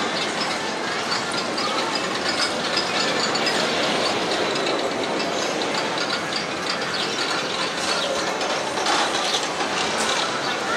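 Arrow Dynamics steel roller coaster train running along its track: a steady mechanical clatter with rapid clicking.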